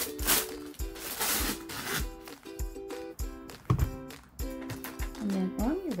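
Wax paper rustling and being torn off the roll in the first two seconds, over background music with a steady beat.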